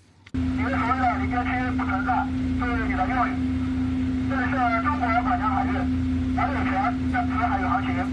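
A Chinese warship's radio broadcast heard over a ship's marine radio speaker: a voice speaking Chinese in several short phrases, thin and band-limited, over a steady electrical hum and a constant low rumble.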